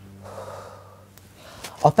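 A young man drawing one audible breath through his open mouth, about half a second long, then starting to speak near the end. A low, steady music tone fades out underneath.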